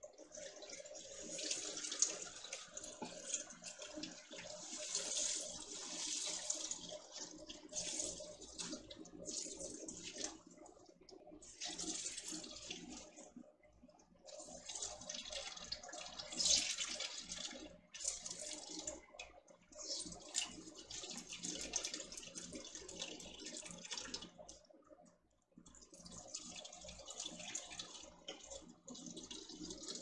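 Crab apple juice streaming and splashing from a squeezed cloth jelly bag through a colander into a stainless stockpot. It comes in surges of a few seconds with brief lulls as the bag is wrung.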